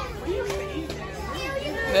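Children's voices talking softly in the background, over a steady low hum.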